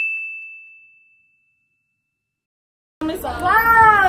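A single high, clear bell-like ding that rings and fades away over about a second, followed by dead silence: an edited-in chime sound effect.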